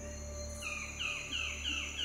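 Soft background music with a low steady drone, over which a bird calls a run of repeated descending notes, about three a second, starting a little over half a second in.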